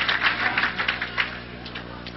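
Audience applause dying away, thinning to a few scattered claps that stop about a second and a half in.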